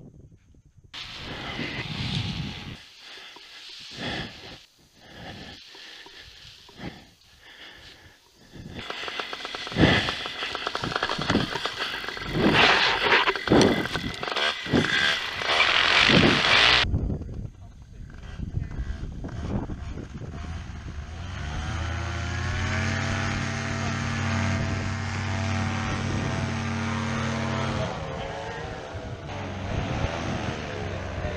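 For the first half, gusty rushing noise of wind on the microphone. After a cut, a paramotor's propeller engine comes in, climbs in pitch as it is throttled up, and then runs steady at high power.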